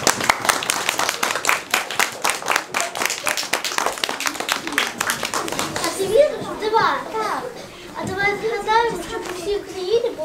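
Audience clapping, mixed with children's voices, for about the first six seconds; then the clapping stops and a child's voice is heard speaking.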